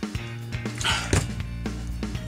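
Background music with a steady beat and a sustained bass note, with a short breathy noise about a second in.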